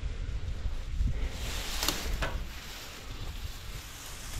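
Low wind rumble on the microphone. About two seconds in there is a burst of rustling with a couple of sharp snaps, as someone pushes through plants after a garter snake.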